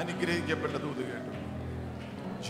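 Voices speaking over soft, steady background music with a held low chord.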